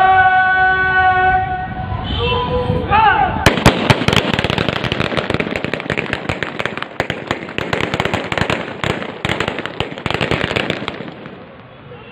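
A long, drawn-out shouted drill command, then, from about three and a half seconds in, a rapid, irregular ripple of rifle shots from a line of parade troops firing into the air in a celebratory feu de joie. The shots run for about seven seconds and thin out near the end.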